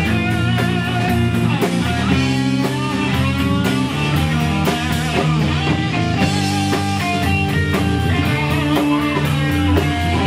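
Rock band playing: an electric guitar lead with bending, wavering notes over bass guitar and a drum kit with steady cymbal strokes.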